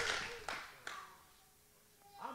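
The tail of a shouted phrase through a PA dying away in the hall's reverberation, with a couple of faint clicks, then near silence.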